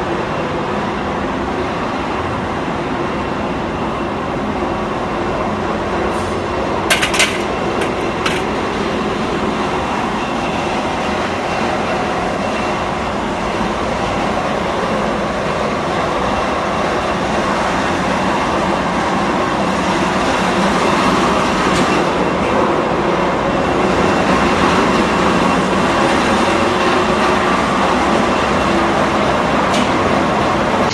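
Foundry machinery running: the steady, loud rumble of a flaskless molding machine and its mold conveying line. A few short, sharp sounds come about seven and eight seconds in, and the noise grows a little louder in the second half.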